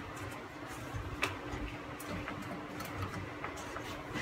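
Faint scattered clicks and rustles of a corrugated retractable plastic dust-collection hose being handled and fitted onto a dust collector's inlet.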